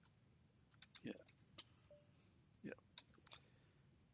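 Faint keystrokes on a computer keyboard: about half a dozen separate, unevenly spaced clicks as a command is typed.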